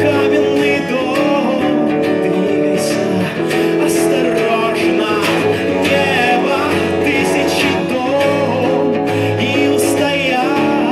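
A male voice singing held notes with vibrato over an acoustic guitar.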